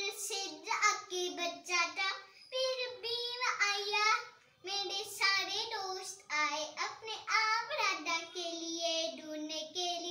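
A young child singing alone in a high voice, with no accompaniment, in short phrases that have brief breaks about two and four and a half seconds in.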